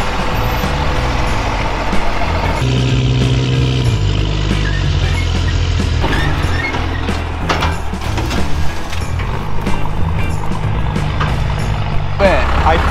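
An old tow truck's engine running under load as it pulls a boat trailer through soft sand, with knocks and rattles in the second half, under background music.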